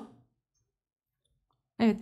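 Near silence between speech: a woman's voice trails off at the start, and she says a short word again near the end.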